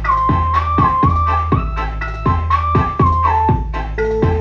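Music played through a home-built power amplifier with an MCRD V3 driver board under test: heavy, deep bass and regular drum hits about twice a second under a held melody line that steps between notes.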